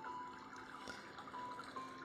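Faint soft background music: a few long held notes that step slowly upward, over a low steady drone.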